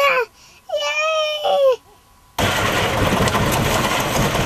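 A small boy calling out in a high voice, "Grandpa, grandpa! Ah!", twice. About two and a half seconds in, a loud, even rushing noise begins as a load slides out of a tipped cart bed.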